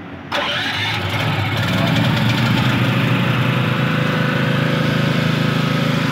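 Yaofeng YP3500E petrol generator's single-cylinder four-stroke engine key-started on its electric starter and auto choke, catching a moment in and quickly rising to a steady run.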